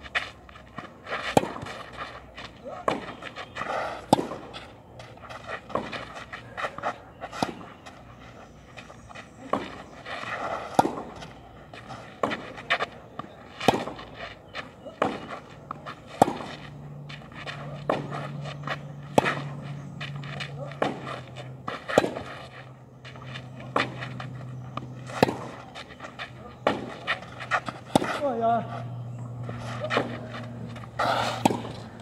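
Tennis rally on a clay court: sharp racket strikes on the ball alternating with softer bounces, about one every second, with players' breathy exhalations on some shots. A low steady hum joins about halfway through.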